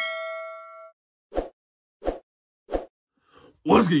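A bright bell-like ding sound effect of a notification bell, ringing with several clear tones and dying away within about a second. It is followed by three short, evenly spaced thumps.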